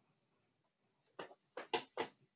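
A near-silent pause in a conversation, then a few faint, short vocal sounds in the second half, just before a man starts to speak.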